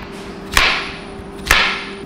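Chef's knife slicing through zucchini and yellow squash onto a cutting board: two sharp cuts about a second apart, each with a short hissing tail.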